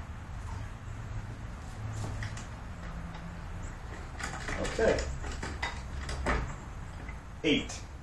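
Scattered clicks and knocks of a bow, bowstring and hanging digital scale being handled on a wooden tillering tree, over a steady low hum. A few louder knocks come around the middle and near the end.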